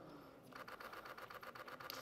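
Camera shutter firing in a rapid continuous burst, about ten faint clicks a second, starting about half a second in.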